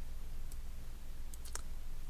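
Computer mouse button clicks: one click about half a second in, then a quick run of three around a second and a half in, the last the loudest, over a steady low hum.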